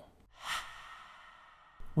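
A single soft, breathy whoosh of air about half a second in, fading away over about a second.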